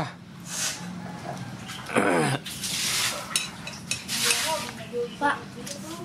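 Metal spoons clinking against plates and bowls at a meal, with scattered light clicks and rustles, a short word spoken about two seconds in, and a low steady hum underneath.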